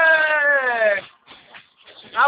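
A person's voice holding one long high-pitched note, sliding down in pitch and stopping about a second in.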